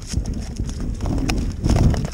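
Northern pike flopping on bare ice, its body slapping the ice in a few irregular knocks.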